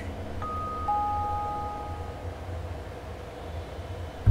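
Two soft chime notes, a higher one about half a second in and a lower one about a second in, each held for about two seconds over a low steady hum.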